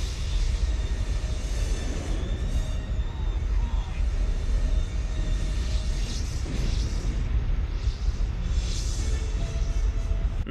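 Action-film soundtrack: dramatic music over a heavy, continuous low rumble of an air battle, with jet fighters firing missiles that burst against an energy shield.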